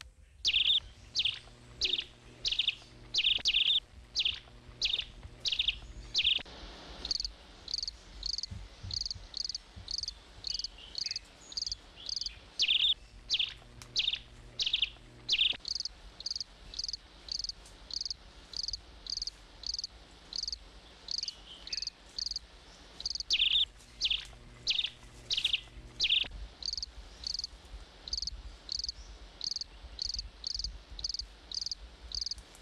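High-pitched rhythmic chirping, about two chirps a second, typical of crickets or a similar night insect.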